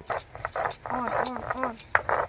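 Stone batta being rolled back and forth on a sil grinding stone, crushing garlic and spices in repeated scraping strokes. About a second in, three short rising-and-falling cries sound over the grinding.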